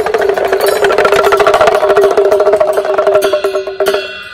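Live accompaniment for Bhutanese masked dancing: a fast, even roll of drum strikes over a steady held note, breaking off near the end.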